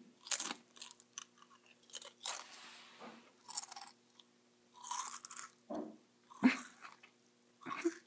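A person chewing a mouthful of Pringles potato crisps: a run of irregular crunches, about one a second.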